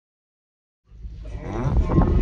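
Silence for nearly the first second, then outdoor sound cuts in: a low rumble and a drawn-out, low voice sound whose pitch bends, growing louder toward the end.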